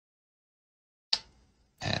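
About a second of dead silence, then a short, sudden vocal noise from the narrator, like a grunt or throat sound, fading within half a second; speech begins near the end.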